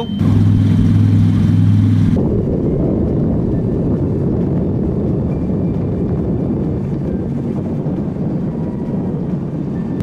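Twin V8 engines of a powerboat running under way, with the rush of water and wind over the hull. The sound starts as a steady engine drone, then changes abruptly about two seconds in to a denser, rougher rush.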